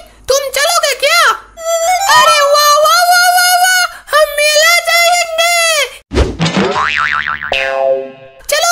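High-pitched, sped-up cartoon character voices talking. About six seconds in comes a comedic boing sound effect with a fast-wobbling pitch, ending in a short run of falling notes.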